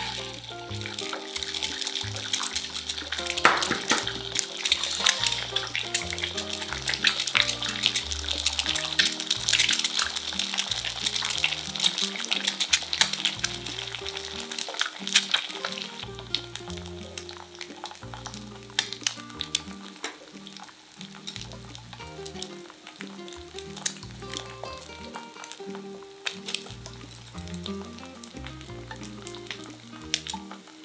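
Two eggs frying in oil in a pan, a dense sizzle with many small pops. The crackle is heaviest through the first half and thins out later on. Background music plays underneath.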